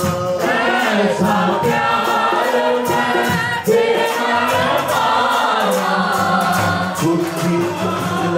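A congregation of men and women singing a Punjabi devotional bhajan together, led into microphones. A dholak drum, chimta jingles and hand-clapping keep a steady beat.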